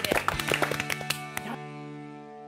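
A group clapping, which cuts off abruptly about one and a half seconds in and gives way to a sustained music chord of several held tones that rings on and slowly fades.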